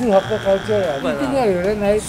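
A man talking animatedly, with an electronic wrong-answer buzzer sound effect laid over the first second, a steady buzzing tone that stops about a second in.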